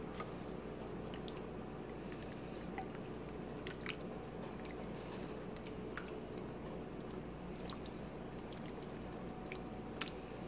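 Faint wet squelching and small scattered clicks of a plastic spoon stirring thick soup with soft lasagna noodles in a ceramic slow-cooker crock, over a low steady hum.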